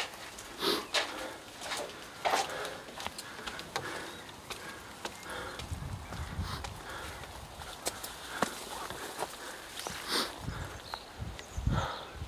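Irregular footsteps scuffing and crunching on mossy stone steps and leaf-littered ground, with brushing through vegetation. A low rumble comes in about halfway through.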